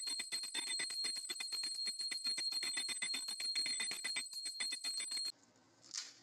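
A prayer hand bell rung rapidly and continuously, about eight strokes a second, for a puja lamp offering. The ringing stops suddenly about five seconds in.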